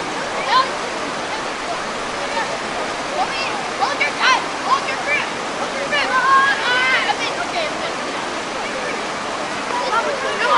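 Creek water rushing steadily over smooth rock chutes, with voices calling out in the background a few times.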